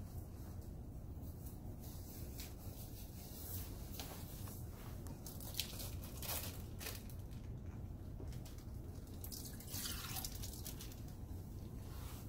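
Light handling of a glass beaker and its plastic bag cover: scattered short clicks and a few brief rustles over a steady low hum.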